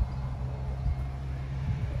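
Diesel engine of a Volvo V40 D3 idling: a steady low hum.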